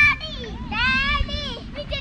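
Children's high-pitched voices calling out in play, in short excited cries that rise and fall in pitch.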